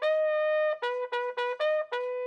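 Military bugle sounding a call: one held note, a quick run of about four short notes, then a long held note that begins near the end.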